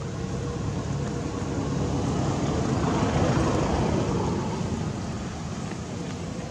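Steady rumbling background noise that swells to a peak about halfway through and then fades away.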